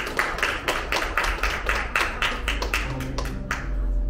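Rhythmic hand clapping in time with a gypsy jazz tune, about four to five claps a second, stopping about three and a half seconds in as low bass notes carry on.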